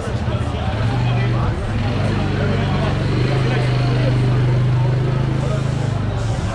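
Voices of passers-by talking on a busy pedestrian street, over a steady low mechanical drone that grows stronger about halfway through.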